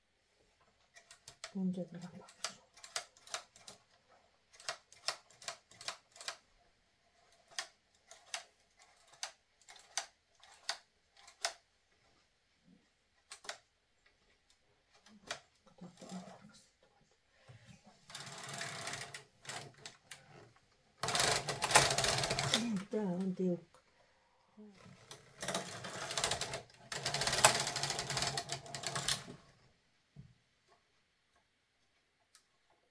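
Domestic flatbed knitting machine: a run of sharp metallic clicks as needles and fittings on the needle bed are handled. In the second half come three rasping passes of the carriage across the bed, each a second or more long, the last and longest near the end.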